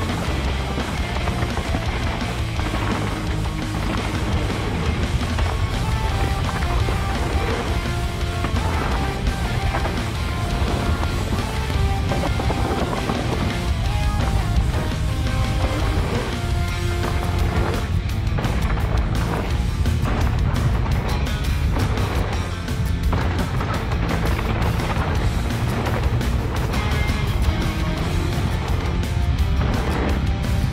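Background music: a rock track with short held notes over a steady bass, and sharper drum-like hits in its second half.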